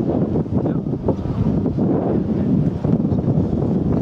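Wind buffeting the camera's microphone: a loud, steady, gusty low rumble.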